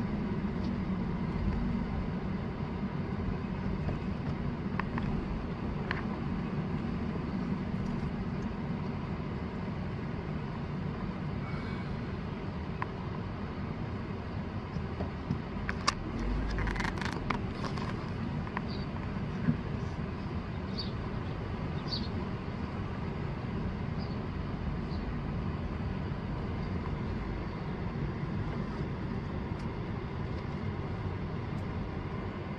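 Steady low engine rumble of the vehicle carrying the camera, heard from on board. A few short knocks and clicks come about halfway through.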